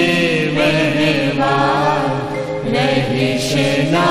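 A devotional aarti hymn sung in Gujarati: long held notes with gliding ornaments over a steady low drone.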